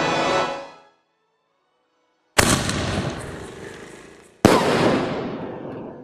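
Aerial firework shell: two sharp bangs about two seconds apart, each trailing off over about two seconds, the shell firing from its tube and then bursting in the sky. Background music fades out just before.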